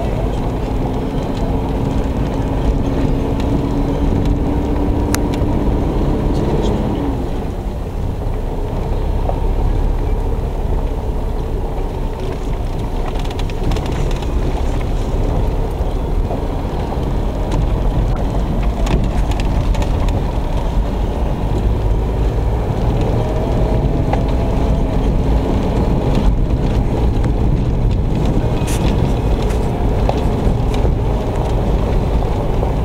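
Car driving on a gravel road, heard from inside the cabin: a steady low rumble of engine and tyres on loose gravel. A faint engine note climbs slowly over the first few seconds and again about two-thirds of the way through, with a few light ticks along the way.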